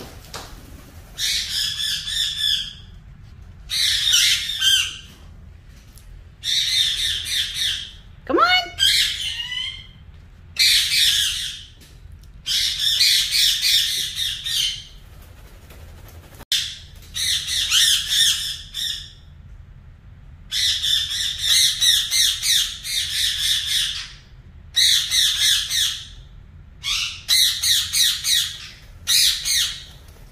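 Indian ringneck parakeets squawking loudly and repeatedly: about a dozen harsh, high calls of a second or two each, with short pauses between. About eight seconds in there is one rising whistle.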